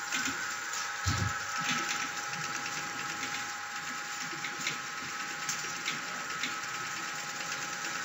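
Automatic ice cream stick loading and box filling machine running: a steady mechanical whir with held tones, light irregular clicks and clatters, and a single low thump about a second in.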